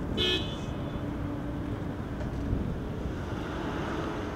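Road traffic noise with a low rumble of wind, and a short, high-pitched toot like a horn about a quarter of a second in.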